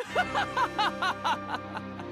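A man laughing 'ha-ha-ha-ha' in quick, evenly spaced bursts, about five a second, over steady held background music. The laugh trails off about a second and a half in, leaving the music.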